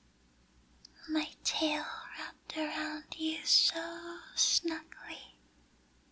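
A woman whispering softly in short broken phrases, from about a second in to near the end; the words are not made out.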